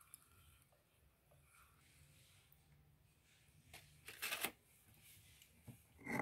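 Near silence, broken by a brief cluster of rustling handling noises about four seconds in and a short one near the end, as the fish net and small glass jar are handled.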